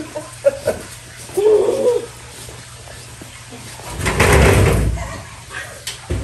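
Aluminium jon boat hull being handled and set down onto wooden sawhorses, with a few light knocks early on and one loud noise lasting about a second, about four seconds in, as the hull comes to rest. A short vocal sound from one of the lifters comes just before the middle.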